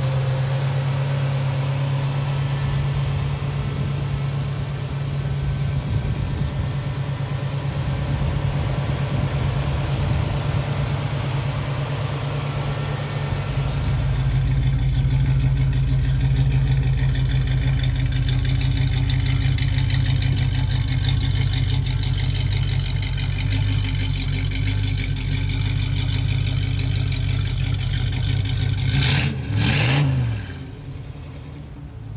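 1968 Pontiac Firebird's 350 HO V8 with a four-barrel carburettor idling steadily. About halfway through the sound turns deeper and a little louder, and near the end there is a short rise in pitch.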